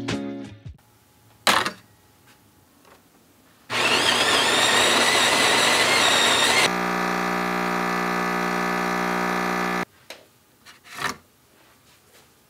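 Automatic bean-to-cup espresso machine making a coffee: a click, then its built-in grinder grinding beans for about three seconds, then the pump humming steadily for about three seconds as it brews, cutting off suddenly. A few light clicks follow near the end.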